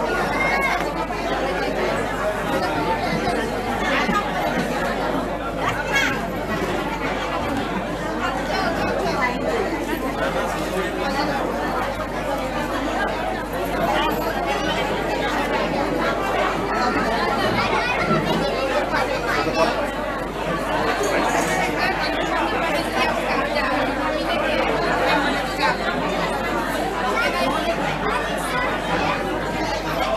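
Many people chatting at once in a large hall: a steady hum of overlapping conversation with no single voice standing out.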